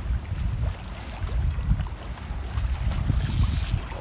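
Wind buffeting the microphone in a steady low rumble over choppy water lapping against a concrete seawall, with a brief hiss about three seconds in.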